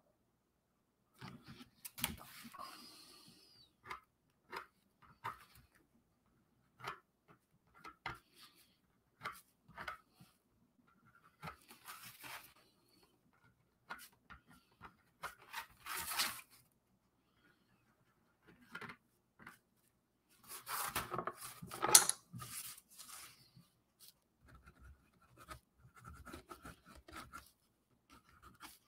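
Paint marker tip scratching and dabbing on the drawing surface in short separate strokes while white highlights are laid onto the slime, with a busier, louder run of strokes about three-quarters of the way through.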